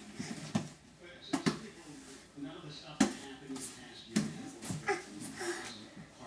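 A baby babbling and vocalising in short bursts, with several sharp slaps and knocks as he moves about on a wooden floor.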